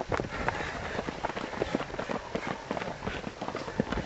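Footfalls of several fell runners running past on a dry dirt hill path: many short, irregular, overlapping steps.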